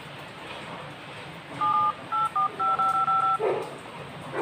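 Keypad tones from a Vsmart Joy 3 smartphone's dial pad as a number is tapped in. A quick run of short two-note beeps starts about halfway through, and the last several are all the same tone.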